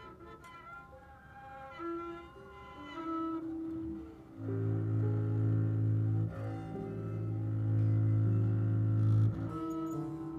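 Free-improvised jazz from a small ensemble. Quiet, high held tones come first; about four and a half seconds in, a loud, low, steady held note comes in with a second held tone above it, and it drops away shortly before the end.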